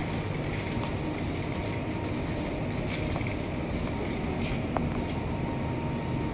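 Steady low rumble and hiss of a supermarket's background noise, with a few light clicks and knocks from a handheld phone.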